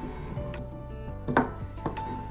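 Three short wooden knocks as a hand handles a small thick-walled wooden box and its push-fit lid, the loudest about a second and a half in, over faint background music.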